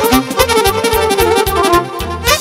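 Live Romanian lăutărească party music from a wedding band: a melody line over a fast, steady beat. The melody drops out briefly near the end.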